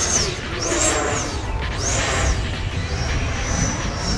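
E-flite Viper 90mm electric ducted-fan jet, running an FMS 8S 1500kv motor, whining as it flies overhead, its high pitch rising and falling three times as it manoeuvres, over a steady low rumble of wind on the microphone.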